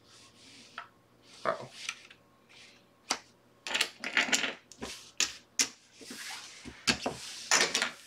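Playing cards slid out and dealt onto a felt blackjack table, then a run of sharp clicks as casino chips are handled in the chip tray.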